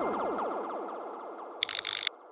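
Electronic sound-effect sting of an animated logo: a rapid run of falling pitch sweeps that fade away. Near the end comes a short burst of sharp camera-shutter-like clicks.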